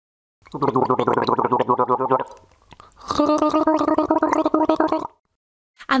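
A person gargling water while voicing a tone, making a gurgling sound. There are two gargles with a short pause between, and the second is higher in pitch.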